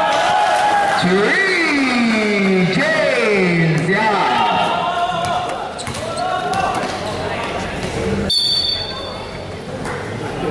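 Basketball game in a large echoing hall: the ball bouncing and players' shoes on the court, under spectators shouting with long drawn-out, sliding calls in the first half. Near the end the sound breaks off suddenly and a brief high steady tone follows.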